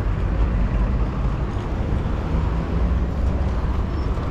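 Road traffic noise: a steady low rumble with no distinct single event.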